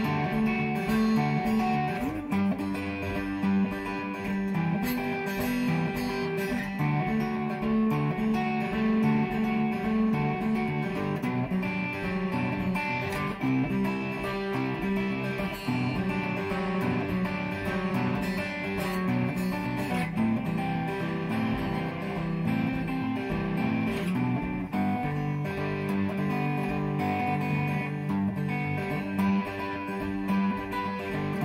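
Semi-hollow electric guitar in an alternate tuning, played through a Vox amp and fingerpicked with a pinch-picking technique: a continuous pattern of plucked notes over ringing low strings.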